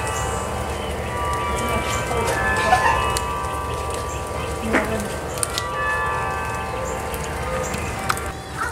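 Carillon bells of the Singing Tower ringing, several sustained bell notes overlapping and hanging on as new ones are struck, over a soft hiss of rain. A single sharp knock about halfway through.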